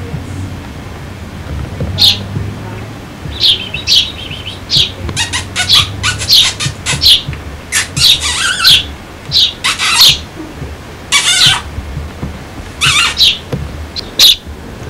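Hand-raised young sparrow calling repeatedly: short, sharp, high chirps in quick runs starting about two seconds in, with a few longer, harsher squawks mixed in. The family takes the calling for hunger.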